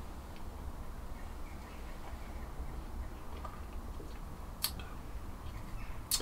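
Quiet room tone with a steady low hum and a few faint ticks, and one sharper click about two-thirds of the way through.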